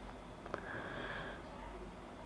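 Snap-on presser foot of a domestic sewing machine being unclipped by hand: one light click about a quarter of the way in, then a short soft hiss.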